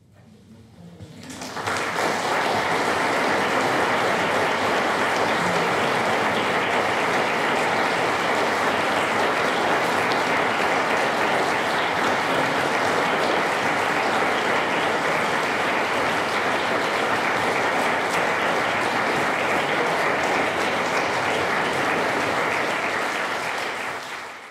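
Concert audience applauding. The applause swells over the first couple of seconds, holds steady, and fades out at the very end.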